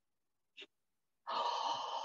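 A faint click, then a woman's long breathy exhale lasting about a second, a sigh of delight.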